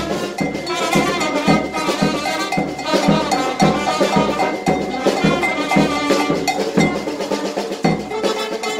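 A small brass band playing live: trumpets, saxophone and a large brass bass horn over snare and bass drum, keeping a steady beat of about two strokes a second.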